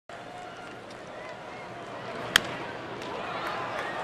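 Ballpark crowd murmur with a single sharp crack of a bat hitting a baseball a little past halfway, the batter putting the ball in play on the ground; the crowd noise swells gradually after the hit.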